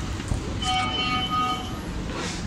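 An electronic alarm tone, several pitches sounding together, held for about a second and repeating, over steady background hubbub.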